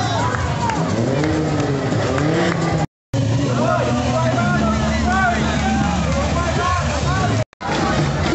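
Jeep engines running at low speed with a steady low hum, under a crowd's shouting and calling voices. The sound cuts out twice for a moment.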